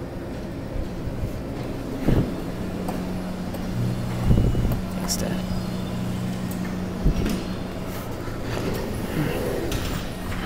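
Claw-crane machine running: a steady low motor hum that starts about three seconds in, with a few sharp knocks and clunks from the claw mechanism.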